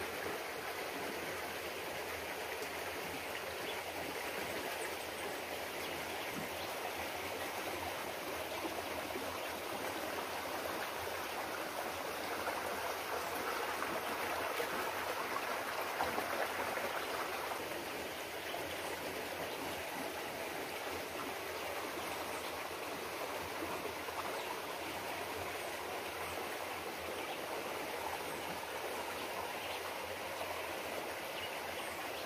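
Shallow stream flowing over rocks: a steady rush of running water, a little louder for a few seconds around the middle.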